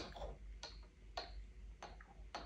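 Metal spoon clicking and scraping against a small glass jar of ice cream: four faint, sharp ticks a little over half a second apart.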